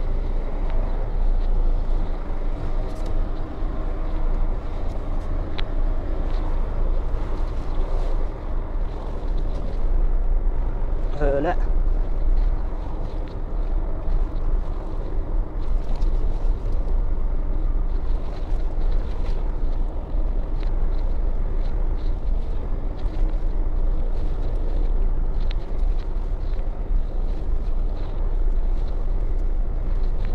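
Volvo truck's diesel engine running steadily at low speed, heard from inside the cab as a deep rumble. About 11 seconds in, a person's voice calls out briefly.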